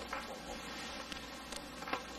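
Faint, steady buzzing hum of quiet room tone, with a few soft ticks.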